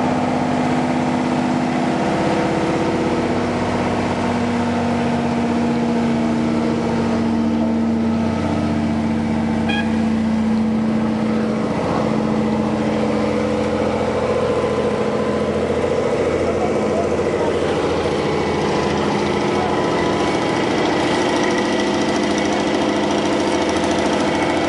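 Diesel engine of a Cifali asphalt paver running steadily at a constant speed while asphalt is laid.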